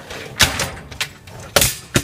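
Wire dishwasher rack being pulled out of the tub, rattling, with a sharp clank about half a second in and a few more clanks near the end.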